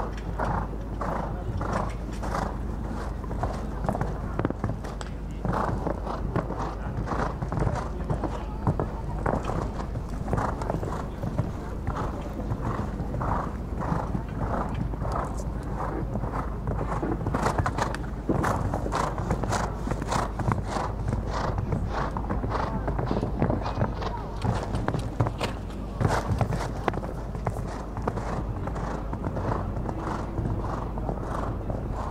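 A show-jumping horse's hooves at the canter on sand arena footing: a steady rhythm of footfalls, each stride hitting the ground in turn, over a low outdoor rumble.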